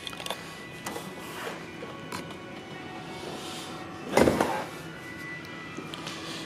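Bentley Arnage boot lid being closed: one dull, heavy thud about four seconds in, over faint background music.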